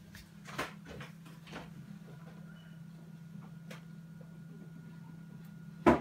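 A few faint clicks, then one sharp knock near the end, over a steady low hum.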